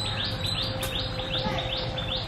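A bird calling: a quick, even run of short rising chirps, about four a second.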